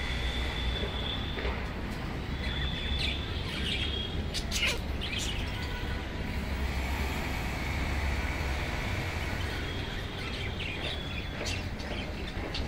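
Budgerigars calling: soft drawn-out whistles and short sharp chirps, the sharpest about four to five seconds in and again near the end, over a steady low rumble.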